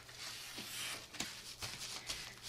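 Rustling of a kraft paper padded envelope being handled, with two sharp little clicks about halfway through.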